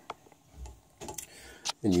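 A few light clicks and a soft low knock from hands handling a 3D printer's aluminium extrusion frame; speech starts just before the end.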